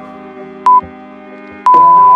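Exercise-timer countdown beeps over plucked-string background music: one short high beep about a second in, then a long beep at the same pitch starting near the end as the count runs out.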